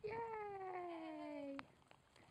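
A long drawn-out vocal sound from a person that slides steadily down in pitch for about a second and a half, then cuts off suddenly.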